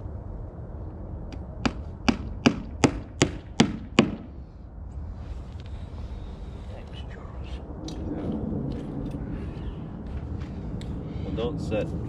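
A hammer driving a nail into wood: about eight sharp blows in quick succession, roughly three a second, getting louder, with the last one loudest.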